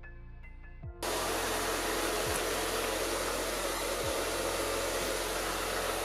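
Handheld hair dryer starts abruptly about a second in and blows steadily on high, heating the adhesive of a vinyl skin being peeled off a laptop lid.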